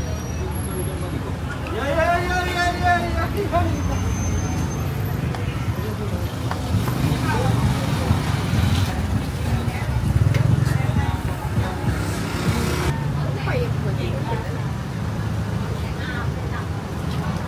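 Busy street traffic at night: engines of passing cars, vans and motorbikes running steadily, mixed with the voices of people nearby, one voice calling out loudly about two seconds in.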